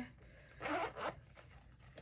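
A short rasping rustle, two quick swells together lasting about half a second, a little over half a second in.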